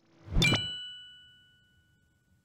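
Chime sound effect of an animated logo intro: a short rush into a bright ding about half a second in, its several ringing tones fading away over the next second and a half.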